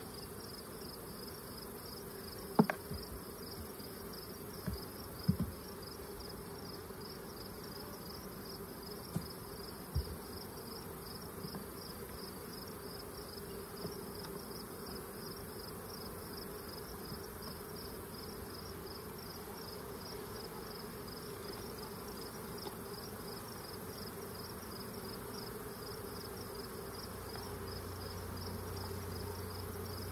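Honey bees humming steadily at an open hive, with a high, evenly pulsed insect chirping going on throughout. A few sharp knocks stand out in the first ten seconds, the loudest about two and a half seconds in.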